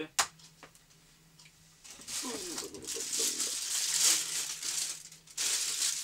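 A sharp knock on a wooden desk as a small part is set down, then plastic packaging crinkling in two long stretches as a camera battery is unwrapped.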